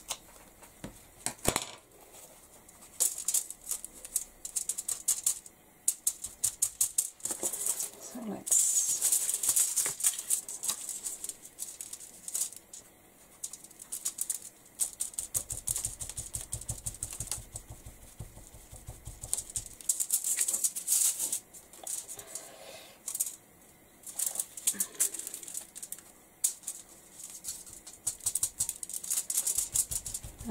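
A paint-loaded sponge dabbed quickly through a plastic stencil onto a card tag. It makes runs of light taps and rustles, with short pauses between the runs.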